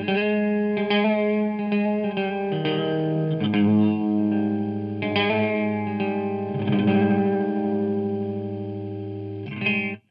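Electric guitar played through a Slow Loris pedal, an envelope-modulated, chorus-like delay effect: chords and notes struck every second or so, each left ringing on. The playing cuts off suddenly at the very end.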